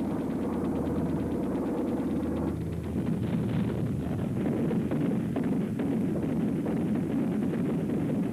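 Battle sound: a dense low drone of aircraft engines with rapid machine-gun rattling, growing rougher and more irregular with sharper bangs about two and a half seconds in.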